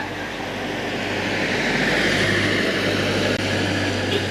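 Steady rushing rumble of motor traffic with a low hum underneath, building to its loudest around the middle and easing slightly near the end.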